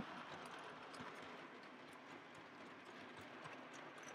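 Faint, irregular light clicking of an OO gauge model train, a Class 25 diesel hauling vans, running over the track and through a tunnel, over a low hiss.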